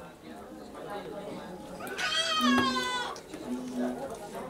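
A single high-pitched drawn-out cry, about a second long and falling slightly in pitch, rising above background chatter about halfway through.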